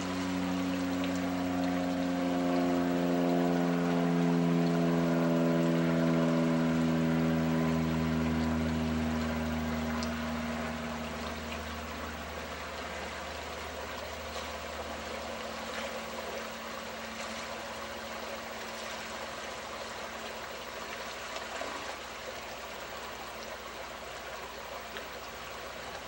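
Shallow river water running and splashing around a wader's legs. A low pitched hum sits over it, slowly falling in pitch and fading out about halfway through.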